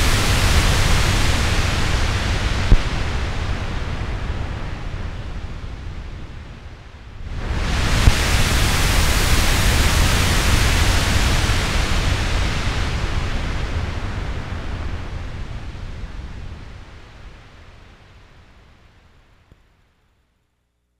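Minimoog synthesizer playing a noise-generator patch: a swell of rushing noise with a deep low rumble, fading away, then a second swell about seven seconds in that dies out slowly.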